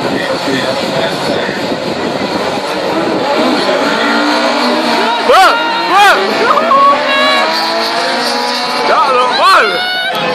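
Rally car engines revving hard, with a steady climb in pitch and quick sharp rises and falls, loudest about five and six seconds in and again near the end, over spectator chatter.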